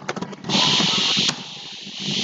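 Computer keyboard keys typed in a quick run of clicks, then a loud hiss lasting under a second.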